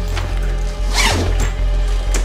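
A zipper on a fabric duffel bag pulled in one quick stroke about a second in, over background music with a steady low bass.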